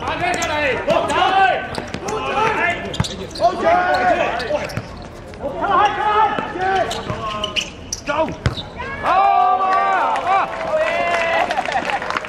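Men's voices calling out across an outdoor football pitch during play, with a few sharp thuds of the football being kicked and bouncing.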